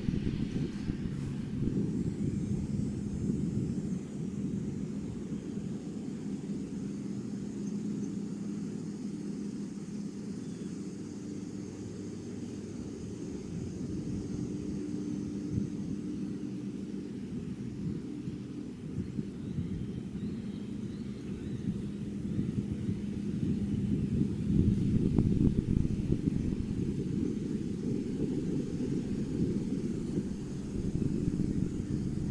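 A low, steady rumble with a faint hum in it, growing louder for a few seconds near the end.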